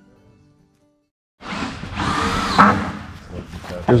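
Rooster crowing, a loud raspy crow that starts suddenly about a second and a half in, after a brief silence, and rises and falls before trailing off. Faint background music fades out at the start.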